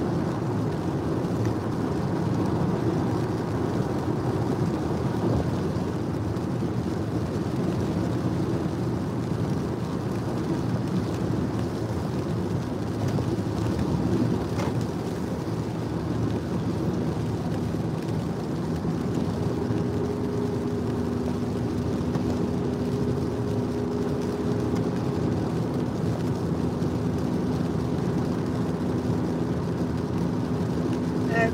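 Steady road and engine noise inside the cabin of a moving car, an even rumble that holds level throughout. A steady low hum joins about two-thirds of the way in.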